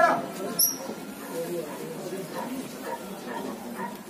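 A voice calls out right at the start, then low, indistinct chatter of people, with one short, high-pitched chirp about half a second in.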